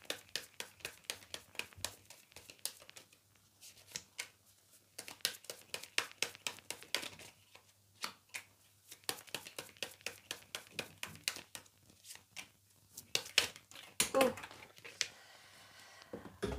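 Oracle cards being shuffled and handled by hand: a fast, uneven run of light clicks and rustles of card stock, with a quieter stretch a few seconds in, and cards set down onto the cards on the table.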